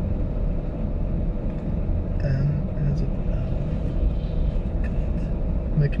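Car idling, heard from inside the cabin as a steady low rumble with a faint steady hum. A brief low murmur of voice comes about two seconds in.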